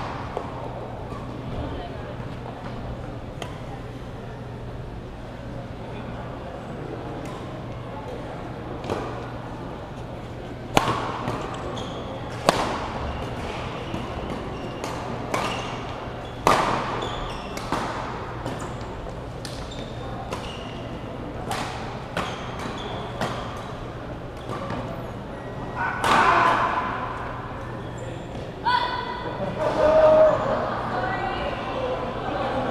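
Badminton rackets smacking a shuttlecock during a doubles rally, sharp hits at uneven intervals echoing in a large hall. Under them runs a murmur of voices from around the hall and a steady low hum.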